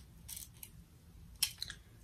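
Flat iron being worked through the ends of a ponytail: a few short, faint, crisp rustles and clicks as the hair slides between the plates and the iron is opened, the sharpest about a second and a half in.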